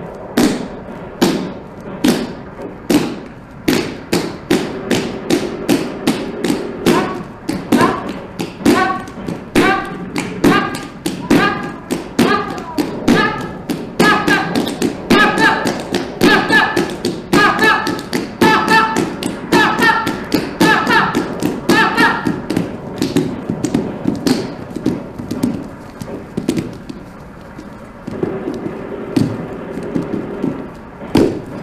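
Kathak dance footwork: feet striking the stage floor in a rhythm that grows faster and denser after the first few seconds. A pitched vocal line runs over the strikes through the middle stretch.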